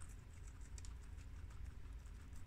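Guinea pigs munching romaine lettuce: quick, crisp crunching clicks of chewing, several a second, over a low rumble.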